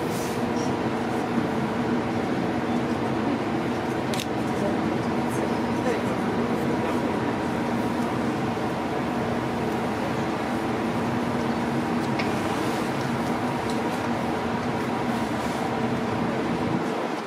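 Steady hum of a Hurtigruten coastal ship's machinery while under way, several even tones held throughout, with a few faint clicks.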